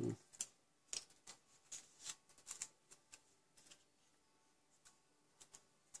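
Faint, scattered clicks and taps of tweezers and small die-cut paper flowers being handled and pressed onto a card, thinning out after about four seconds.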